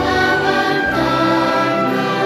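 Choir singing a Catholic hymn in Spanish with string accompaniment, holding long notes and moving to a new chord about a second in.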